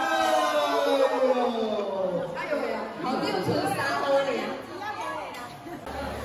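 Speech over a microphone and loudspeakers, with crowd chatter behind it.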